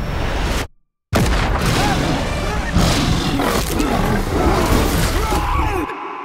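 Film-trailer soundtrack: the music and effects cut out to dead silence for about half a second, then a sudden loud boom opens a dense stretch of music and sound effects.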